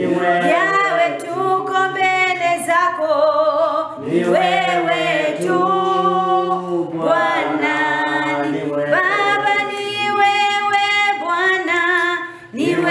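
A woman singing a slow worship song unaccompanied, with long held notes in phrases of a few seconds each.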